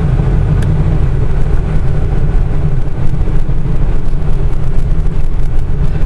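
Georgia Boy Maverick motorhome running on a gravel road, heard from inside the cab: a steady heavy low engine and drivetrain rumble mixed with the irregular crunch and rattle of tyres on loose gravel.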